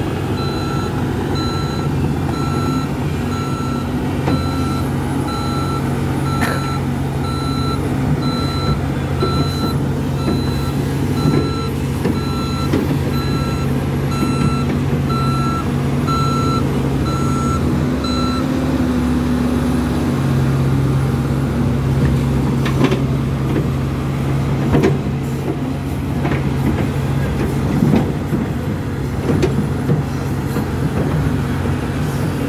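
Heavy diesel earthmoving machinery running steadily, with a reversing alarm beeping about twice a second that stops about two-thirds of the way through. A few short knocks are heard near the end.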